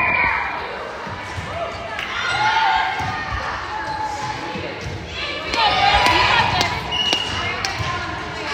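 Girls' voices calling out in an echoing gymnasium, with a few sharp knocks of a ball bouncing on the hardwood floor.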